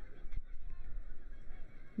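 Faint outdoor football-pitch sound: a low rumble of wind and field noise with faint distant calls, and a single knock about a third of a second in.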